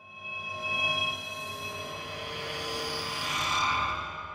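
Synthesized drone with several steady high tones over a rushing noise, fading in over the first second and swelling again near the end before fading: an edited-in transition sound effect.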